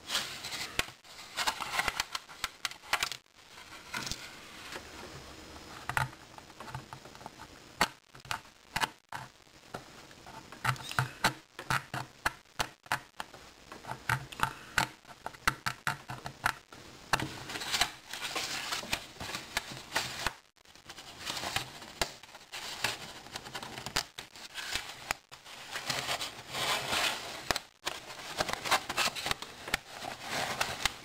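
Thin vacuum-formed plastic sheet of a model building being bent, snapped and worked free along scribed lines: repeated sharp clicks, crackles and scraping strokes that come in bursts.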